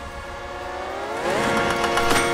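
Soundtrack swell: several sustained tones glide upward together about half a second in, then hold steady as a chord, sounding like a siren or train horn.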